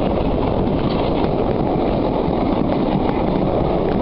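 Steam-hauled train on the move, heard from an open coach window just behind the tender of ex-Caledonian Railway 0-6-0 steam locomotive 828: a steady, even rush of wind and running noise.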